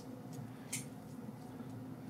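Faint small ticks and rubbing from fingers threading the metal barrel onto a Squareplug stubby 1/4-inch plug, with two slightly clearer ticks in the first second.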